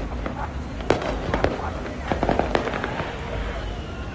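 Firecrackers going off: a series of sharp cracks and pops at irregular intervals.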